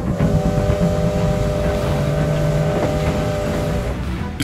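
A train whistle blowing one long, steady, chord-like note over a hiss like wind and a low rumble.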